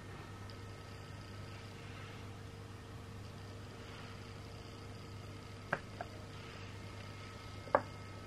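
Quiet room tone with a steady low electrical hum, broken by small light clicks as the plastic stencil and a tool are handled on the table: two light ticks close together past the middle and a sharper click near the end.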